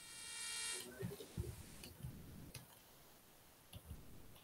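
A short buzzy electronic tone that swells for under a second and cuts off, followed by a few soft, scattered keyboard keystrokes.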